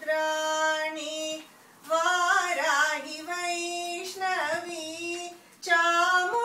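A woman singing a Tamil devotional song to Abhirami solo, without accompaniment. She holds long sustained notes and sings wavering, ornamented runs on the vowels, with two short pauses for breath.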